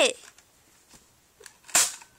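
A single short, sharp, hissing burst near the end, a gunshot sound made for the toys' shoot-out.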